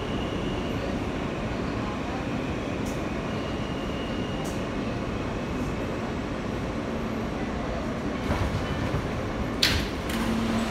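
New York City subway car interior as the train rumbles steadily and slows into a station. Near the end there is a short sharp hiss of air as the car's sliding doors start to open.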